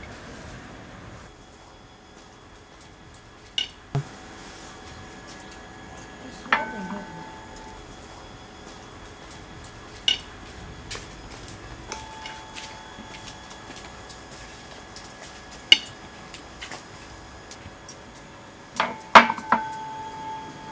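Scattered clinks of a metal fork against a metal frying pan as mashed potato is scooped out, a few of them ringing briefly. The loudest come a little past the middle and in a quick cluster near the end.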